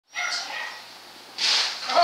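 A small terrier gives high-pitched yips, one just after the start and another at the end, with a short hissing noise between them.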